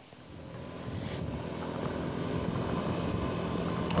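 Road traffic with motor scooter engines running, growing steadily louder.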